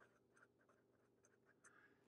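Very faint scratching of a Sharpie felt-tip marker writing a word on paper, a few short strokes in near silence.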